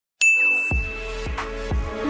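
A brief silence, then one bright notification-style ding, the chime of a subscribe-button sound effect, ringing out and fading within a second. Music with deep, repeated bass-drum hits starts under it.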